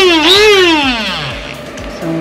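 Small electric blade grinder's motor whining at full speed, dipping and picking up once, then spinning down with a falling pitch over about a second as it is released.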